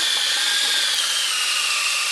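Cordless drill spinning an internal pipe cutter inside a three-inch PVC pipe, cutting the pipe down in place. A steady, high motor whine with the cutter grinding on plastic, the whine dropping slightly in pitch about a second in.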